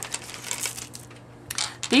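Pearl bead necklaces clicking and rattling against one another as a strand is pulled from a plastic bag, with a louder clatter about one and a half seconds in.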